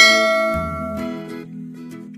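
A bright bell-chime sound effect, the notification-bell 'ding' of a subscribe animation, rings and fades over about a second and a half. It is layered over the last plucked notes of a ukulele-like jingle, which die away near the end.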